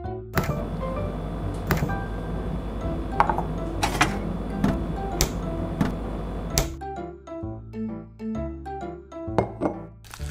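Light background music. For the first six seconds or so a steady noise runs under it, with several sharp knocks and taps as a miniature refrigerator door is handled and a small metal mold is set inside.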